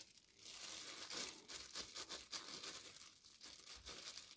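Faint, irregular crinkling of a thin disposable plastic glove as a gloved hand handles raw ground pork.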